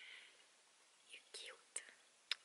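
Very faint whispering: a soft breathy voice with a small click near the end.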